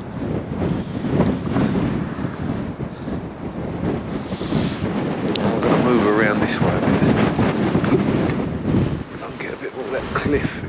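Strong wind buffeting the microphone, a loud low rumble that swells and eases, with a brief sharp click about five seconds in.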